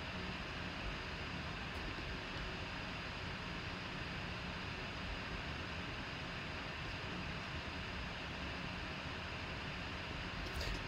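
Steady background hiss and low hum of room tone, with no distinct events.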